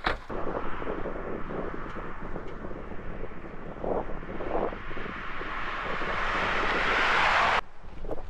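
Honda Odyssey minivan approaching along the road, its tyre and road noise building steadily louder as it nears, then cutting off abruptly near the end. A single sharp knock comes at the very start.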